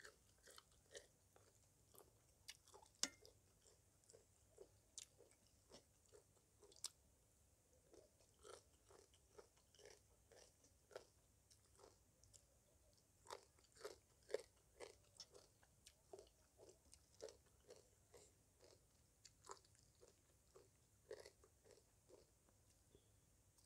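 Faint close-up chewing of spicy papaya salad (som tam), a steady run of small crunches and mouth clicks, about one or two a second.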